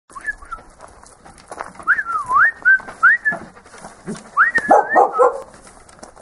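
Dog barking, with high, smooth, sliding whistle-like calls rising and falling in pitch several times, and a quick run of barks about four and a half seconds in.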